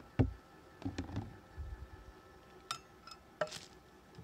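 Hard knocks and clatter of a plastic tub and wooden hive covers being handled and set down, the sharpest knock just after the start, with a few lighter clinks near the end. Underneath is a faint steady whine from the small motorized mite-wash shaker running.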